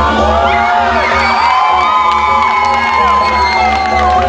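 Live electronic dance music played loud through an arena PA, with a steady bass and many short rising and falling glides above it, and whoops and shouts from the crowd.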